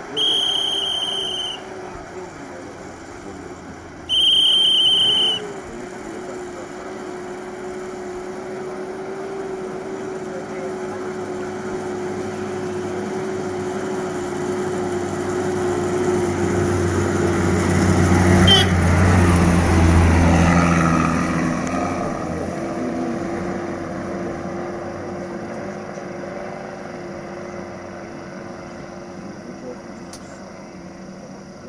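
A van's engine drives up the road and past, growing louder until it is loudest at about eighteen to twenty seconds in, then fading as it goes away. Two loud, high-pitched beeps sound near the start, the first about a second and a half long, the second about a second long.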